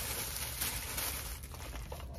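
A white takeout bag rustling as a foam clamshell food container is pulled out of it.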